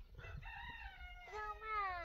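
A rooster crowing: a couple of held notes, then a long final note falling in pitch.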